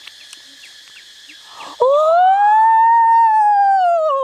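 A man's long, drawn-out howling "ooooh" about two seconds in; its pitch rises and then slowly sinks over about two and a half seconds. Before it, a steady high insect drone.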